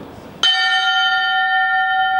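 A wall-mounted bell struck once by its pull rope about half a second in, then ringing on with a clear, steady tone made of several pitches that slowly fades.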